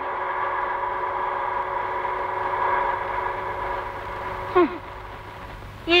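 A car engine running steadily as the car drives away, fading over the last few seconds. A woman's short falling cry about four and a half seconds in.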